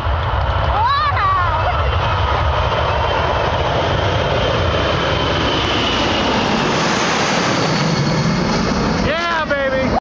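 Boeing C-17 Globemaster III's four turbofan jet engines at takeoff power as the transport climbs out: a loud, steady jet rush with its high-pitched hiss strongest about seven seconds in, as it passes close overhead.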